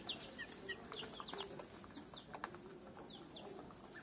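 Backyard chickens clucking faintly, with a scatter of short, high, falling chirps and a few light clicks.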